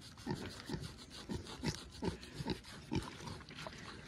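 Pot-bellied pig grunting softly in short, repeated grunts, about two or three a second, with its snout down at a blanket.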